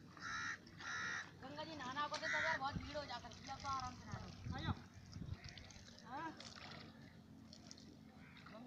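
Two short, harsh bird calls within the first second or so, then indistinct human voices calling out.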